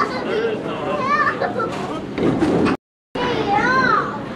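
Background chatter of several voices, among them children's, with no clear words. The sound drops out completely for a moment about three quarters of the way through, at an edit.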